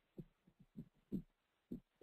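Faint, irregular low thuds, about five in two seconds, over near silence.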